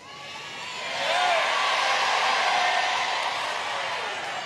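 Large crowd applauding and cheering, swelling over the first second and then holding steady, with a brief whoop about a second in.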